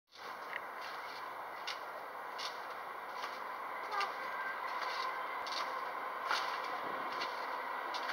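Steady outdoor background noise with faint short ticks about once a second.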